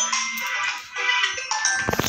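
Mobile phone ringing with a musical ringtone, with a low thump just before it ends.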